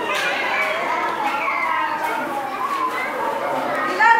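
Many voices talking over one another, children's among them: a steady murmur of chatter in a room.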